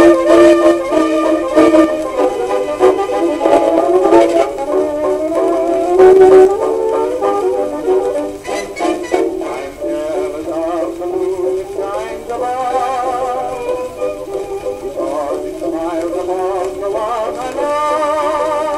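1924 acoustically recorded Victor 78 rpm record playing a small novelty dance band on a turntable. The sound is thin, with almost no bass, and the melody lines waver with vibrato in the second half.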